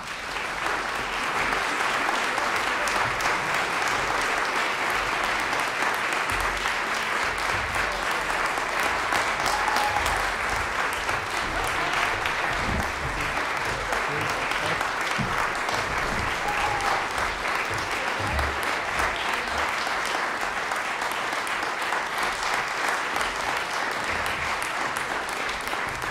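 Audience applause, dense and steady.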